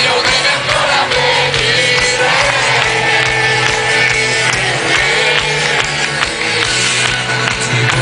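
Live rock band playing loud through a stadium PA, recorded from inside the crowd, with a voice singing over the band and crowd voices mixed in.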